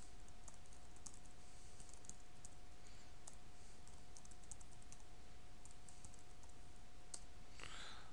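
Computer keyboard keystrokes as a terminal command is typed: faint clicks in short irregular runs, over a low steady hiss and a faint steady tone.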